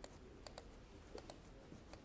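Near silence: room tone with a few faint, sparse clicks.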